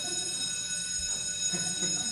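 Electronic timer alarm sounding a steady, high-pitched buzzing tone, the signal that speaking time is up.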